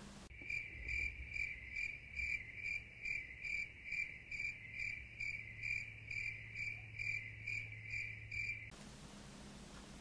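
Cricket chirping sound effect dubbed in over silence: an even, high chirp about three times a second, starting abruptly and cutting off sharply near the end.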